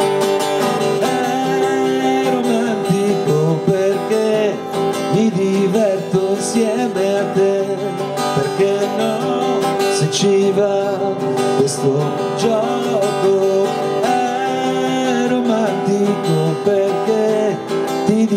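Martin DXM acoustic guitar strummed steadily, with a man's voice singing along into the microphone.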